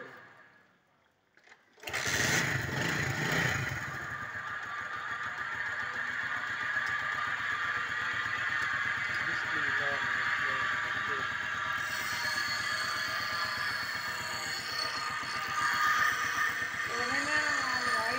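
A small single-cylinder motorcycle engine starts suddenly about two seconds in, then runs steadily, with a brighter high-pitched whir joining about two-thirds of the way through.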